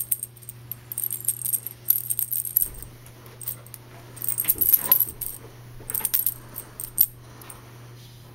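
Light metallic jingling in several short bursts, with scattered clicks, over a steady low hum.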